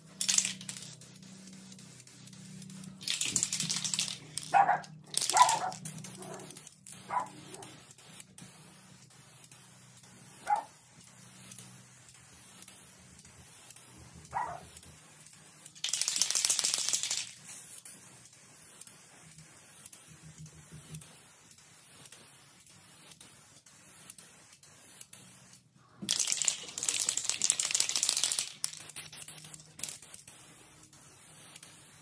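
Aerosol can of black spray paint sprayed in separate hissing bursts: a short one at the start, about a second long near three seconds in, about a second and a half past the middle, and a longer three-second pass near the end. A few short, sharp, louder sounds come between the first passes.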